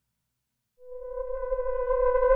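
Dead silence, then a synthesizer drone fades in about a second in: one steady held note with a stack of overtones over a low rumble, growing louder.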